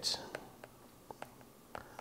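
Faint taps and clicks of a stylus writing on a tablet's glass screen, a handful of soft ticks spread over quiet room tone.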